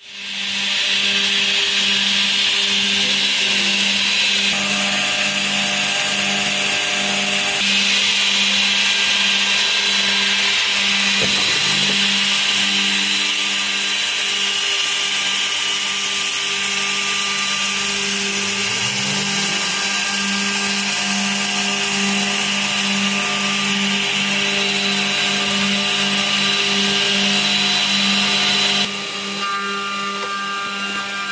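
HOLZ-HER Arcus 1334 edgebanding machine running: a steady motor hum with a broad hiss over it. The sound changes and drops slightly near the end.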